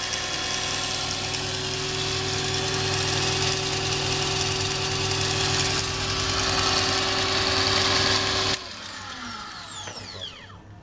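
Grinder motor spinning a printer stepper motor that is being used as a generator, running with a steady hum and whine. Near the end it cuts off suddenly and a falling whine follows as it spins down.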